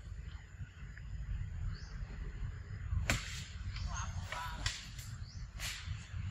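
A few sharp crinkles of a small plastic snack wrapper as a macaque handles and eats from it, over a steady low rumble.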